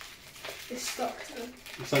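Soft, low speech with faint rustling of a thin plastic bag being handled as a small vinyl figure is worked out of it.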